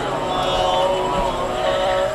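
A man's voice holding a long, drawn-out chanted note over a microphone and PA, the pitch sliding slowly without breaks.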